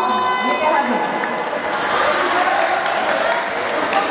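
Basketball game crowd in a gym, cheering with players' voices shouting over the general noise.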